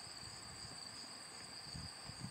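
Faint, steady high-pitched trilling of insects such as crickets.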